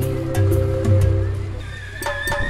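Background music: sustained chords over a repeating bass line with light percussion ticks, easing off near the end.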